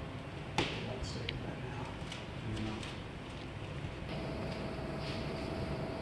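Faint scraping and a sharp click from a plastic scraper working oven-cleaner-softened lettering paint on a truck door. A faint steady hum comes in about four seconds in.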